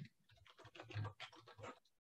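Faint typing on a computer keyboard: a quick run of key clicks, the first one a little sharper.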